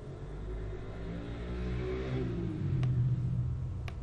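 A motor vehicle engine swelling and rising in pitch, loudest about three seconds in, then fading. Two short clicks sound near the end.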